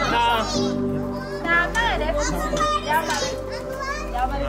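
Many children's voices shouting and calling out at play, over background music with sustained tones.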